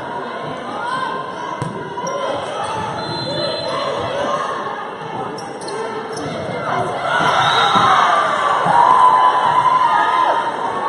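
Volleyball rally in an echoing gym: the ball is struck a few times with sharp smacks, under players calling and shouting. About seven seconds in, the shouting and crowd noise grow louder as the point ends.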